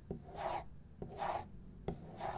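Fingernails scratching across a sheet of paper in two short strokes about three-quarters of a second apart. Each stroke starts with a sharp click as the nails set down, and a third click comes near the end.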